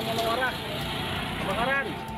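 Voices calling out at a building fire over the steady running noise of a fire truck's engine.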